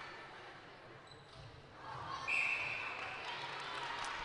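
Faint court sounds with a few low thuds, then a single steady blast of an umpire's whistle about a second long, a little past halfway through.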